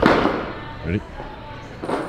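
A sudden thud right at the start that dies away over about half a second, with a second, weaker knock near the end.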